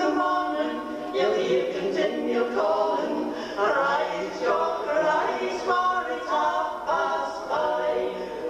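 Four women singing a Scots folk song unaccompanied, in close harmony.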